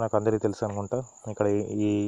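A man talking, with a steady faint high-pitched tone running behind his voice.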